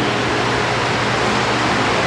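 Steady hiss with no distinct events in it: the background noise of the recording.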